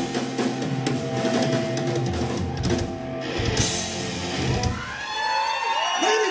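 Live rock band's closing flourish: drums and crashing cymbals hammer out the ending under ringing electric guitar and bass chords. About five seconds in the music drops away and the audience begins cheering and whooping.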